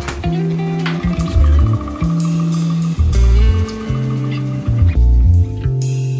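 Hip-hop instrumental beat with deep bass notes that change about once a second and a plucked-string melody over it.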